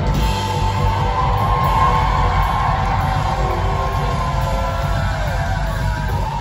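Live heavy metal band playing loud through the club PA: distorted electric guitars, bass and drum kit, heard from within the crowd.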